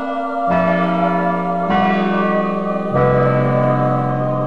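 Church bells ringing: three strikes about a second and a quarter apart, each at a different pitch, ringing on and overlapping.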